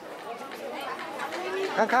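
Background chatter of several people talking, with a man's voice starting near the end.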